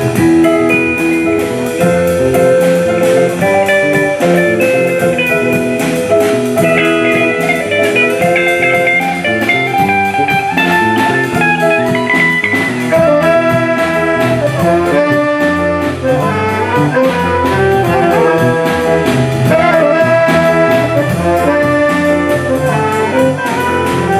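A big band playing a swing jazz number: saxophones, clarinet, trombones and trumpets over electric bass and electric guitar, with a steady beat throughout.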